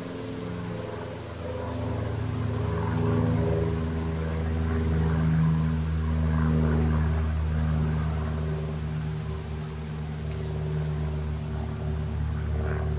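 A low, steady engine drone that swells to a peak in the middle and eases off again. Between about six and ten seconds in, insects chirr in quick high pulses above it.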